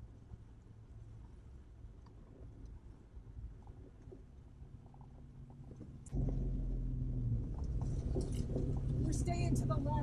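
Vehicle running slowly in a line of traffic on a dirt road, a steady low rumble heard from inside the cab. About six seconds in it abruptly gets louder, and voices come in near the end.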